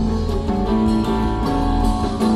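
Live rock band playing an instrumental passage: guitars holding sustained notes over bass and drums, with no vocals.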